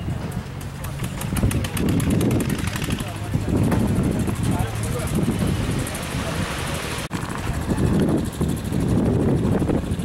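Indistinct voices over the steady noise of a running engine, with a single sharp click about seven seconds in.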